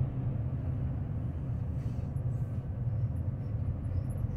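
Semi-trailer truck cruising on the highway, heard from inside its cab: a steady low engine and road rumble.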